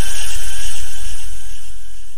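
A loud wash of hiss-like noise over a deep low rumble, an outro noise effect with no singing, fading steadily through the second half.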